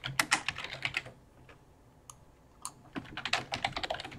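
Computer keyboard typing: a quick run of keystrokes, a pause of about a second and a half broken by one or two single key clicks, then another run of keystrokes near the end.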